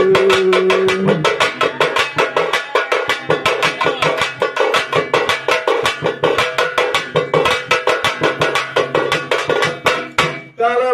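Folk percussion: a double-headed barrel drum and a hand-held frame drum playing a fast, steady rhythm of even strokes. A held note fades out about a second in, leaving only the drums.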